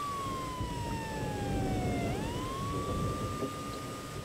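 Ambulance siren wailing: one tone that falls slowly for about two seconds, then swings quickly back up and holds, over a low rumble.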